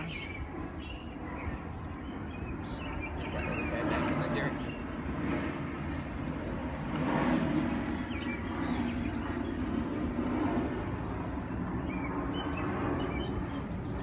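Outdoor background: faint, indistinct voices over a low, steady rumble.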